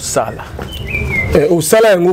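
A short, high bird call, one thin whistle falling slightly in pitch, about halfway through, behind a man's speech.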